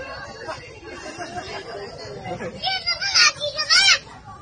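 A small child's high-pitched shouting, in loud bursts over the last second and a half, over the low chatter of adult voices in a crowd.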